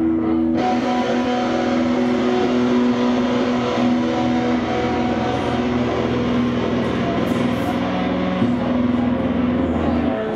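A screamo band's distorted electric guitars holding loud, sustained notes through amplifiers, with no drum beat, the held notes shifting once about eight seconds in.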